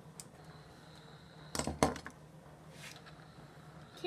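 Hard objects handled on a wooden workbench: a short clatter of knocks about one and a half seconds in, with one sharp knock near two seconds, over a faint steady hum and a thin high tone.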